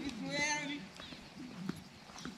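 Faint voices in the background, with one wavering, high-pitched call about half a second in and a few light clicks later.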